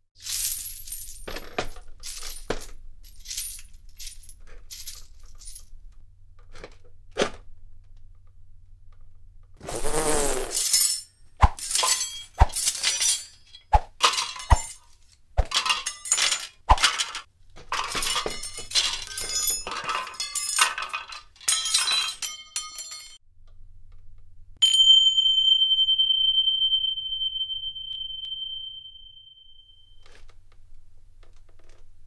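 A run of sharp clicks and clinks, some with a short ring, then a steady high-pitched tone that starts suddenly about 25 seconds in and is held for about five seconds before fading.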